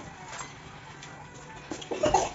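Faint background music, with a few light clinks near the end from a spoon against the steel bowl of thin pancake batter.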